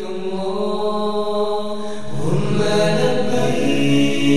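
A religious vocal chant of long held notes sung by several voices, with lower voices joining about two seconds in.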